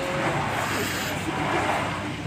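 Steady riding noise of a motorbike under way: engine, tyres and wind making an even rush with no distinct tones.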